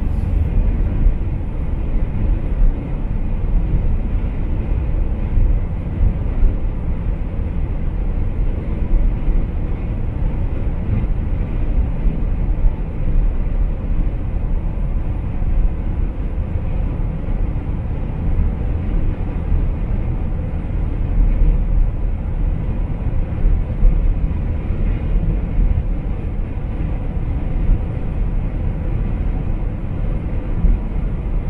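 Steady road and tyre noise heard inside a car cruising at highway speed, a low rumble that stays even throughout.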